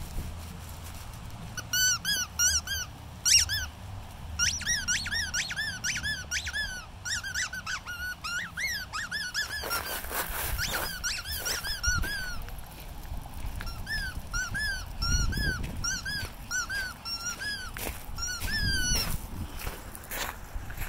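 Squeaky dog toy squeaked over and over: quick, high squeaks several a second, in two long runs with a gap between them.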